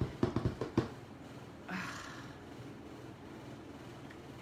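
A rapid run of light taps and clicks in the first second as a clear acrylic stamp block is tapped against an ink pad to ink it. Quiet handling noise follows.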